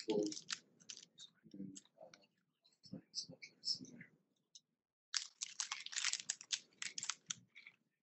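Computer keyboard typing: scattered key clicks, then a quick run of keystrokes about five seconds in.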